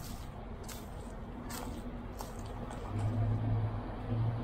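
Footsteps crunching on bark mulch about every three-quarters of a second, over the steady low hum of a nearby vehicle engine. The hum grows louder about three seconds in.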